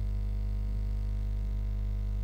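Steady low electrical hum with a stack of even overtones, unchanging throughout, with no other sound over it.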